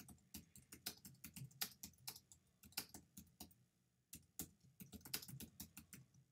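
Faint typing on a computer keyboard: quick, irregular key clicks, with a short pause a little past halfway.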